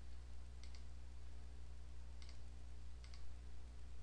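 Computer mouse clicking about four times, each a quick double tick of button press and release, as options are picked from drop-down menus. A steady low hum runs underneath.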